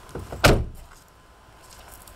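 A car door being shut: one solid slam about half a second in, with a lighter knock just before it.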